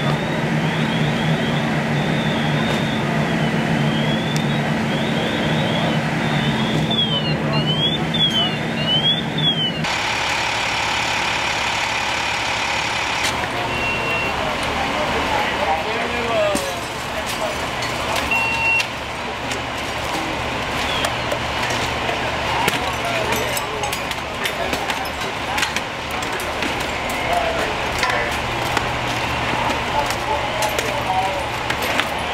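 Fireground ambience: fire apparatus engines running with a steady low hum, short high gliding tones above it, and voices in the background. About ten seconds in the sound changes abruptly to a noisier mix with two short beeps and scattered sharp clicks.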